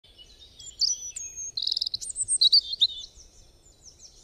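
Birdsong: a string of quick high chirps and whistled notes with a rapid trill, thinning out and fading near the end.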